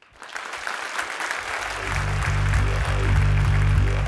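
Audience applause that starts suddenly and swells, joined about a second and a half in by electronic music with a heavy bass line that then carries on under it.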